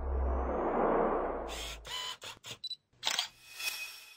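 Logo-sting sound effect: a low rumbling swell, then a quick run of SLR camera shutter clicks about a second and a half in, and two last shutter clicks near the end with a short ringing tail.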